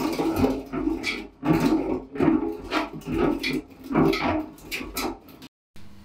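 A full metal beer cask being rolled and rocked about on a cellar floor, rumbling in repeated surges; it is being roused to bring the settled yeast back into suspension for secondary conditioning. The sound stops abruptly near the end.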